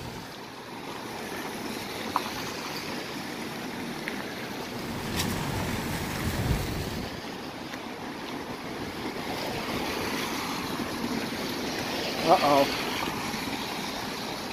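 Steady rush of a river in flood, its fast brown water running high below a bridge.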